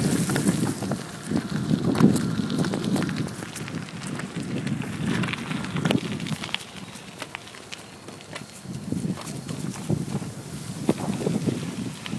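Bicycle tyres rolling over a crushed-gravel trail strewn with dry leaves: an uneven crunching and crackling with many small clicks. Gusts of wind noise rumble on the microphone, loudest in the first few seconds.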